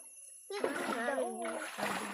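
Water splashing and sloshing as a partly submerged rattan fish trap is handled in shallow stream water, starting about half a second in. A woman's voice is heard over it.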